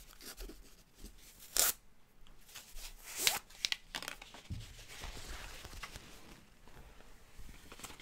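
Packaging handling: a few sharp scrapes and clicks, the loudest about a second and a half in, then softer rustling as a rolled cloth play mat is worked out of its capped cardboard tube.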